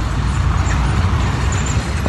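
Steady road-traffic noise from cars and trucks running along the road, a continuous low rumble with no single vehicle standing out.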